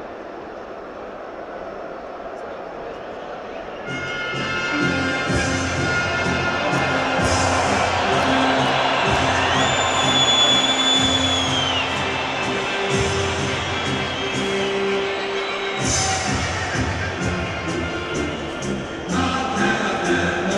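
Music playing in a large stadium over steady crowd noise. The music comes in about four seconds in, with long held notes.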